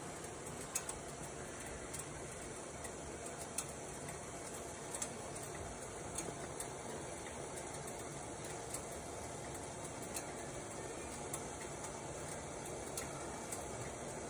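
Pot of water heating on a stove burner just short of a full boil: a faint steady hiss with scattered small ticks and pops as bubbles form and collapse on the hot bottom.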